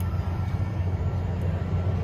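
Steady low rumble of fairground machinery, with no sudden sounds.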